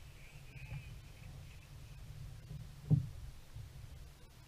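Low rumbling background noise with one dull thump about three seconds in.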